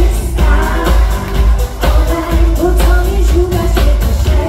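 Loud, amplified live pop music: a woman singing into a microphone over a bass-heavy dance backing track.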